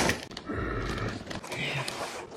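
A clear plastic clamshell tray of cookies dragged across a wooden tabletop, a rough scraping and rattling of plastic on wood.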